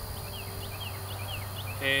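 Outdoor field ambience: a steady high insect drone, with a run of short, high falling chirps over a low steady hum.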